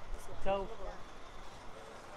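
Street traffic noise around parked buses, with a short call from a voice about half a second in.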